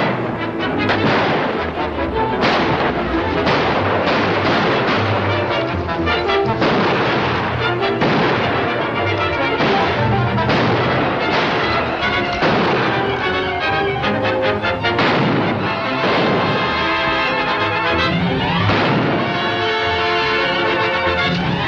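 Orchestral film score with brass, playing under repeated gunshots that come thick and fast through the whole passage.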